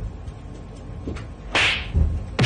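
A single quick whip-like swish, a short rush of hiss about one and a half seconds in, over a low background rumble.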